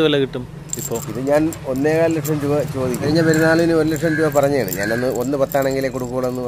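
Speech: a person talking steadily, with no other sound standing out.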